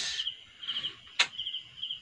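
Crickets chirping faintly in short, repeated pulsed trills, with a single sharp click a little over a second in.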